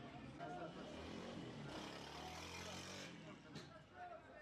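Faint background of a motor vehicle engine running and distant voices, with a rush of noise lasting about a second and a half starting near the middle.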